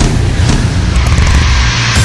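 A loud vehicle engine revving, laid into a rock song's instrumental gap between sung lines, over steady bass.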